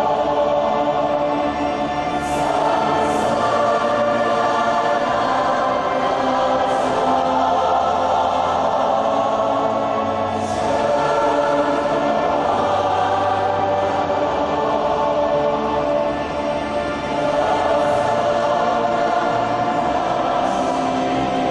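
Student choir singing a hymn in sustained chords with concert band accompaniment and a steady low bass line. A few sharp 's' sounds from the sung words stand out.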